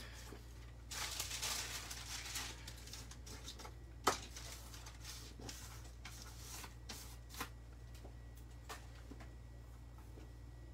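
Paper letter stickers being handled and laid out on a cutting mat. There is rustling for a second or two early on, then a sharp tap about four seconds in and a few lighter taps after it, over a steady low hum.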